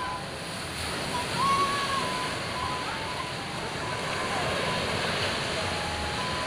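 Sea surf breaking and washing over shoreline rocks: a steady rushing wash that swells about one and a half seconds in.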